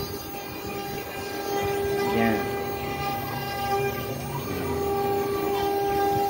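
CNC router spindle running at a steady high whine while it carves a finishing pass with a 2 mm ball-nose bit. Short rising and falling whines from the axis motors cut in about two seconds in and again about four seconds in.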